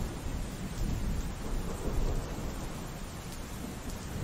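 Muffled rumbling and rustling from a phone's microphone being rubbed and jostled against satin clothing, with a few faint clicks.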